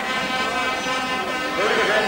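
Speedway motorcycles' 500 cc single-cylinder engines running steadily as the riders come up to the start, with a voice briefly near the end.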